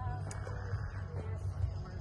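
Faint, brief murmurs of voices over a steady low background rumble.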